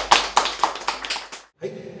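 A few people clapping, the claps quick and even, fading away over about a second and a half before breaking off abruptly.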